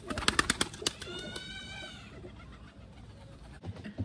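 A pigeon's wings clapping and flapping as it is released from the hand and takes off, a quick run of beats in the first second. A single drawn-out high call follows, rising a little and falling again.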